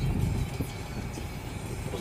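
Cabin noise of a Peugeot car being driven: a steady low rumble of engine and road.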